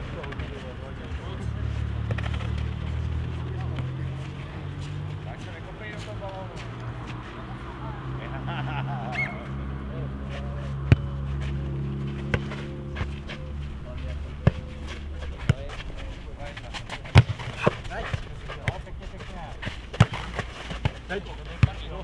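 Futnet ball being kicked, headed and bouncing on a clay court: sharp thuds, a few at first and then about one a second in the second half. Players call out, over a low steady hum that fades about two-thirds of the way through.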